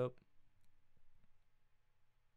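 The tail of a spoken word, then a few faint, scattered clicks over a low steady hum.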